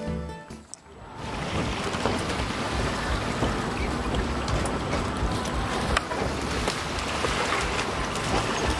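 Background music ends within the first second. It gives way to steady outdoor noise of wind on the microphone and water at the shore, with small scattered ticks and splashes.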